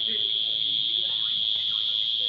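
A steady, high-pitched chorus of insects, one unbroken buzz that does not rise or fall.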